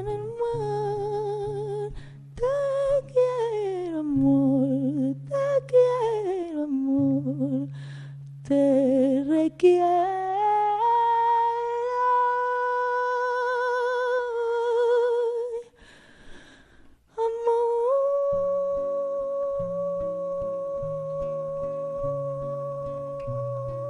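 A woman's voice singing wordlessly over a nylon-string classical guitar: long downward slides in pitch, then a long held note with vibrato. After a brief drop to near silence she takes up another long held note while the guitar picks low notes beneath it.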